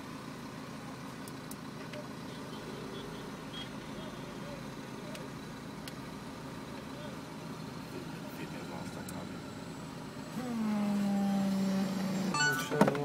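Tram running with a steady low rumble, with faint voices in the background. Near the end a louder steady low tone sets in and holds.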